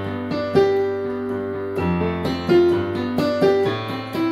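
Yamaha portable keyboard played with a piano voice: single notes changing about twice a second over a held low bass note, which changes once a little under halfway through.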